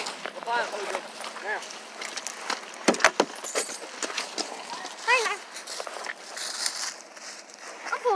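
Footsteps crunching and rustling through dry leaf litter, with a cluster of sharper cracks about three seconds in, and a few brief, high, rising-and-falling vocal calls.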